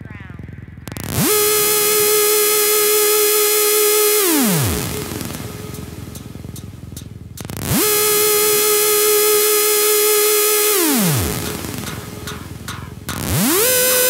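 Hardstyle track in a breakdown without the kick: a bright, buzzy synth lead swoops up into a long held note, then slides down in pitch. This happens twice, and the lead rises again near the end.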